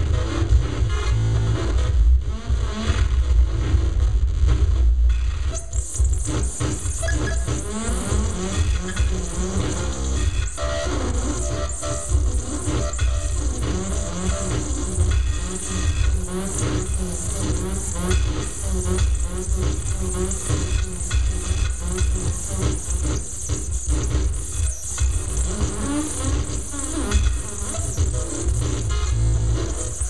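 Live electronic music played on tabletop electronics: a dense, continuous wash with heavy bass and many warbling, wavering tones. A bright hissing layer comes in about six seconds in and stays.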